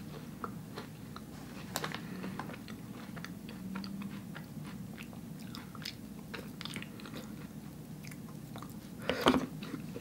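A person chewing and biting a cookie ice cream sandwich, heard close up as faint, scattered mouth clicks. There is a short low hum about four seconds in and a louder sound just before the end.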